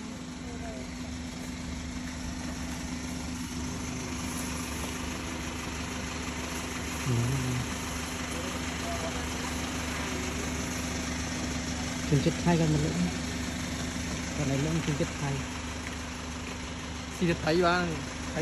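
A steady mechanical hum with one constant low tone, like an idling engine, under short bits of speech.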